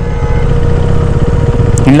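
Motorcycle engine running steadily at low road speed, a dense low rumble of firing pulses with a faint steady hum above it. A voice starts just at the end.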